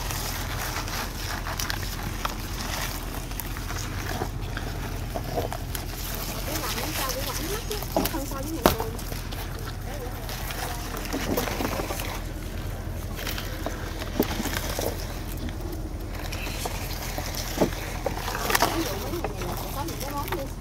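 Yardlong bean pods being snapped off trellised vines by hand, with leaves rustling and a few sharp clicks, over a steady low hum.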